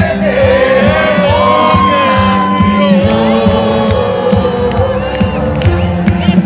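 Live band music over a concert PA: a male singer holding long, sliding notes over a steady drumbeat, with crowd noise from the audience around.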